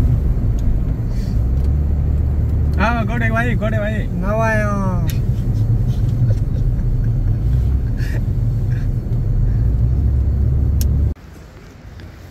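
Steady low rumble of a car driving, heard from inside the cabin. It cuts off suddenly about eleven seconds in.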